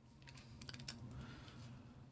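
Very faint room tone with a steady low hum and a few light clicks, clustered from about half a second to a second in, with a few weaker ones later.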